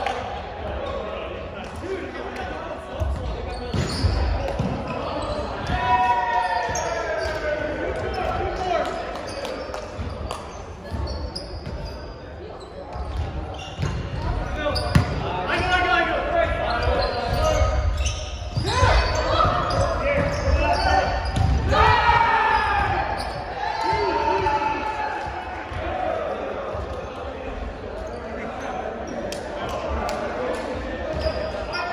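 Indoor volleyball rally: players calling out to each other, with sharp thuds of the ball being hit and landing on the hardwood floor, all echoing in a large gymnasium.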